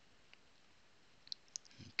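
Near silence with a few faint short clicks, the loudest two about a second and a half in, just before a voice begins.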